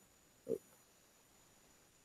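Near silence, broken once about half a second in by a short, low grunt-like sound from a man's voice.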